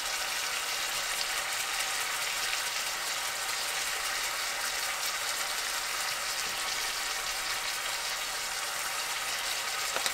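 A frying pan of halibut pieces in a tomato, garlic and onion sauce sizzling steadily on the stove, an even hiss.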